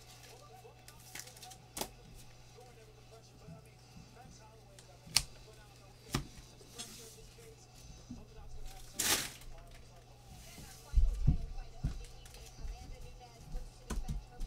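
Trading cards and foil pack wrappers being handled on a tabletop: scattered light taps and clicks, a short crinkle about nine seconds in, and a few low thumps soon after, over a steady low hum.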